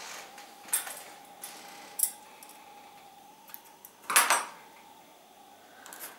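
Handling noise from hand-sewing a dense webbing lifting strap: a few small sharp clicks and taps of tools and fabric, then a longer scraping rustle about four seconds in.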